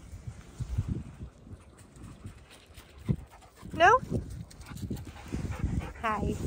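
Alaskan malamute vocalising in play: short rising yips, the loudest about four seconds in and another at the very end, with low grumbly sounds between.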